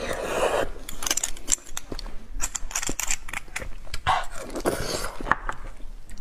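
Close-miked mouth sounds of eating beef bone marrow: wet sucking and smacking with many quick clicks.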